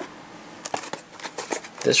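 A scatter of light clicks and rustles from handling a cardboard product box as it is picked up, in a small room.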